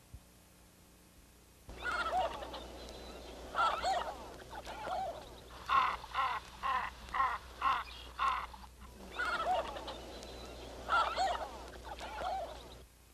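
Birds calling in groups of curving, pitched notes, with a run of about six quick repeated calls at roughly two a second in the middle.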